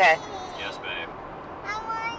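A high-pitched voice making short calls: a loud one right at the start, softer ones just after, and a longer held call near the end.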